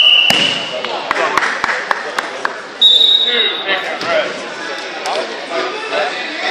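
Referee's whistle gives a loud, steady blast of about a second, the signal that stops the wrestling bout at the pin. A few sharp slaps or claps follow. About three seconds in comes a second, higher-pitched whistle blast of about a second, over gym chatter.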